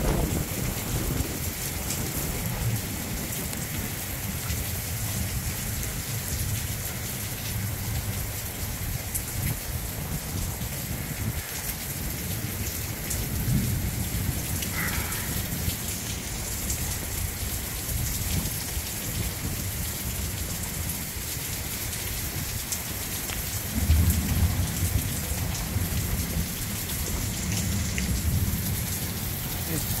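Heavy rain pouring steadily in a thunderstorm, with low rumbles that swell up about halfway through and again near the end.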